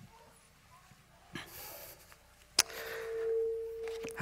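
A brief soft rustle, then a sharp click a little past halfway. After the click a faint steady ringing tone and hiss come up, the sign of the speaker's microphone going live through the hall's sound system.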